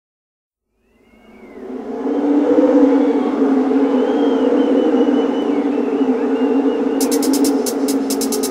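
Opening of a live synth-pop song. After a moment of silence, a sustained synthesizer chord fades in over about two seconds and holds. About a second before the end, a quick, even ticking of high percussion starts.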